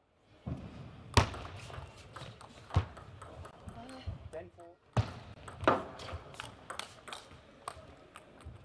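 Table tennis play: the small plastic ball cracking off the players' bats and bouncing on the table in a string of sharp, irregularly spaced clicks, with the clicks ringing in a large hall.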